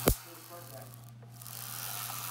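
Wimshurst influence machine discharging across its spark gap: a single sharp snap, like a cap gun, at the very start, followed by a steady low hum.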